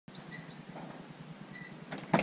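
Quiet outdoor ambience with a few short, high bird chirps near the start and again about one and a half seconds in, and a faint click just before the end.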